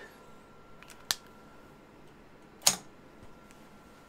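Two brief, sharp clicks about a second and a half apart, over a faint steady high tone.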